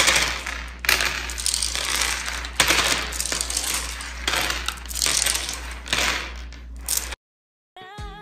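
A long strand of strung beads rattling and clicking as it is dragged across a countertop, the beads knocking against each other and the counter in a quick, irregular run of clicks. It cuts off abruptly about seven seconds in.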